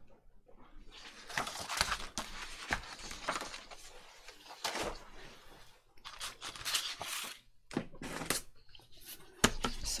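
Sheets of paper sliding and rustling across a cutting mat, with a few light knocks as a clear acrylic ruler is handled and set down on the paper, the sharpest near the end.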